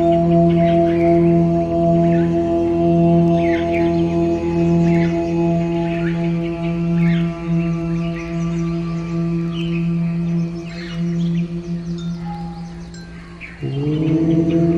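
Meditation music: a sustained, slowly pulsing singing-bowl-like drone with bird chirps over it. The drone fades away near the end and a fresh note swells in just before the end.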